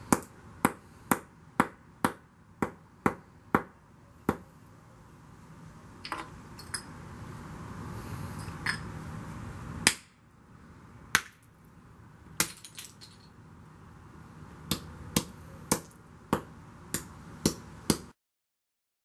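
A hammer striking oyster shells on a concrete slab, pulverizing them into small fragments. The sharp cracking strikes come about two a second, pause midway with only a few scattered blows, then pick up again in a quick run near the end.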